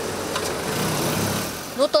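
Police vehicles' engines running at low speed as they pull away, over a steady hiss of street noise.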